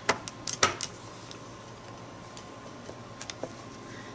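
Small rubber alphabet stamps tapping and clicking as they are dabbed on an ink pad and pressed onto a paper journal page. A few sharp clicks come in the first second, then scattered faint ticks.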